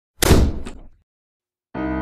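A single heavy thud that rings out briefly, with a fainter knock just after it. Soft piano music starts near the end.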